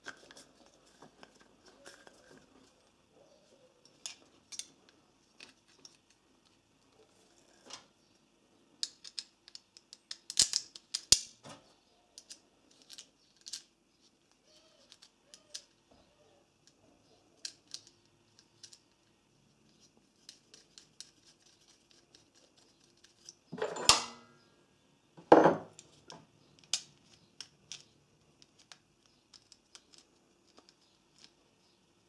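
Metal welding earth clamp being handled and fitted, with scattered light metallic clicks and clinks as its spring jaws and parts are worked. Near the end come two louder knocks about a second and a half apart.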